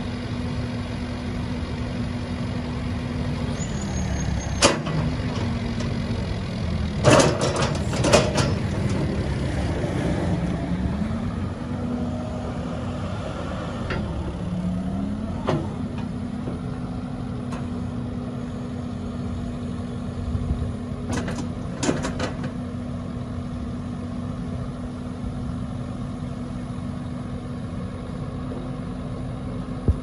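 Caterpillar 308E2 CR excavator's diesel engine running steadily. Twice its pitch sags and recovers as the hydraulics take load while the boom and bucket are worked. Sharp metallic knocks from the working equipment come through it, in a cluster about seven to eight seconds in and again near twenty-one seconds.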